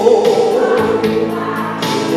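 A man sings a Korean trot song into a handheld microphone over an electronic backing track. He holds one long note that ends about a second in, while the accompaniment plays on.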